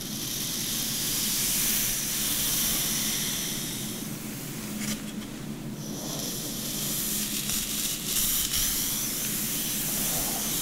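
Fingers running through and massaging long hair close to the microphone: a soft rustling hiss that swells in two long passes, easing off for a moment around the middle.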